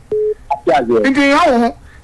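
A short steady beep, then a voice speaking for about a second.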